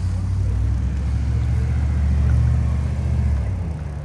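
Low steady rumble of a car moving slowly, engine and road noise, growing loudest a little after two seconds in and easing off near the end.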